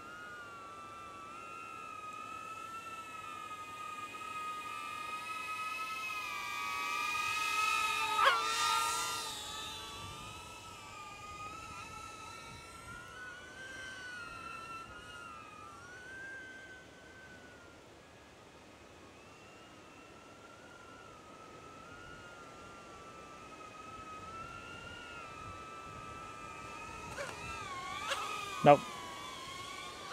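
DJI Neo quadcopter's motors and propellers whining in flight, the pitch rising and falling as the throttle changes. It grows louder to a peak with a sharp tick about eight seconds in, fades, then rises again near the end.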